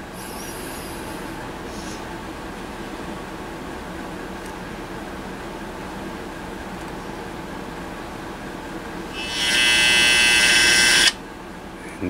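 Soft-start relay in a Collins KWM-2A's AC power supply vibrating with a loud buzz for about two seconds near the end as the variac voltage is raised, then kicking in, the buzz cutting off suddenly. A steady low hum runs underneath.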